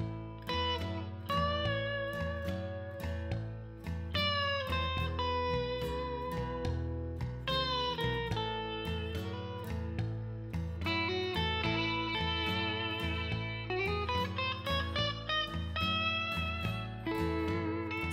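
Background instrumental music: a melody that slides between notes over a repeating bass pattern.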